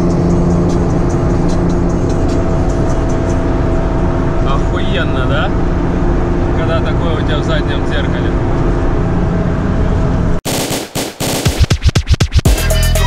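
BMW E30 heard from inside the cabin, its engine running at steady cruising revs under road and wind noise. About ten seconds in, this cuts off suddenly and hip-hop music with record scratching starts.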